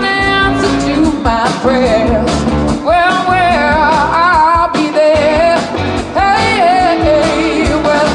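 Live band music: a woman singing the lead melody into a microphone, holding and bending long notes, over electric guitar and upright bass.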